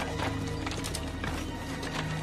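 Horses' hooves clopping in an uneven run of knocks over a dramatic music score with steady low held notes.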